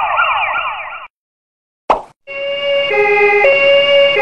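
Siren sound effects: a rapidly sweeping, yelping siren that cuts off about a second in, a short pop, then a two-tone hi-lo siren alternating between two pitches, each held a little over half a second.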